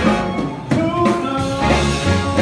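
Live swing band playing: saxophones, trumpet and trombone over an upright bass and a steady rhythm section.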